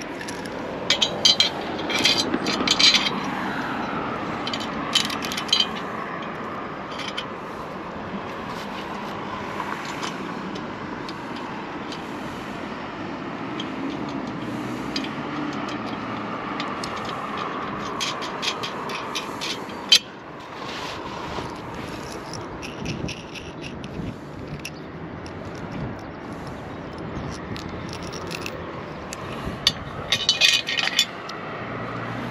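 Light metal clinks and scrapes of galvanised V-bolts and a steel chimney bracket being handled and fitted, with a cluster of clicks early on and one sharper click about two-thirds of the way through. Under them runs a steady, slowly wavering outdoor drone.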